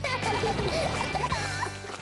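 Children's TV bumper jingle music with short, squeaky, gliding cartoon-character voice sounds over it. The music stops right at the end.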